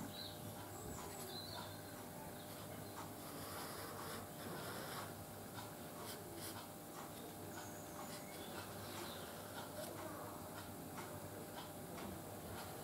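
Felt-tip marker drawing curved lines on an MDF board: faint rubbing strokes with a few light ticks over a low steady room hum.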